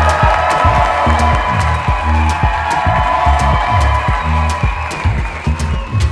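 Background music with a steady bass beat, over a congregation applauding and cheering as the couple are presented after the wedding ceremony.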